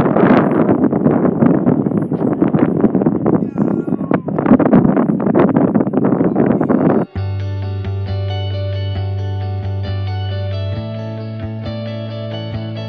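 Loud, gusty wind buffeting the microphone for about seven seconds. Then a sudden cut to background music of sustained guitar chords, with a chord change near the end.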